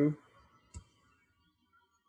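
A single sharp click from a computer keyboard keystroke about three-quarters of a second in, as code is typed.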